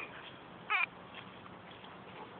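A dog's short, high-pitched yelp with a wavering pitch, about a second in, during rough play over a rope toy.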